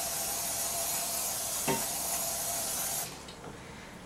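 Aerosol can of non-stick cooking spray hissing steadily into a glass baking dish, cutting off about three seconds in, with a single light knock midway.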